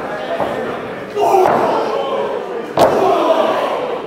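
One sharp, loud slam of an impact in a pro wrestling ring, about three-quarters of the way through, amid a live crowd shouting and cheering that swells after the hit.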